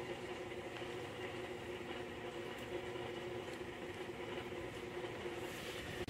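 Quiet, steady background hum with a faint constant tone and no distinct events.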